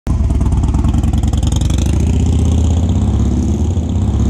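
Harley-Davidson Dyna's V-twin engine idling close to the mic, a steady, loping run of firing pulses through its Bassani Road Rage 3 exhaust, filling out a little about halfway through.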